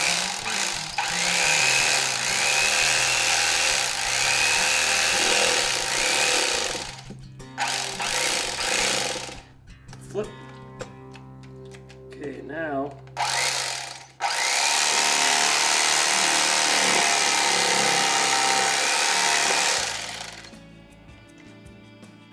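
Electric fillet knife running, buzzing as its reciprocating blades cut a lake perch fillet off the bones. It runs in long stretches, stops for a few seconds in the middle, then runs again and cuts off a couple of seconds before the end.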